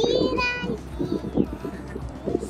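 A young child's high-pitched voice holding one note for about half a second at the start, followed by scattered talking.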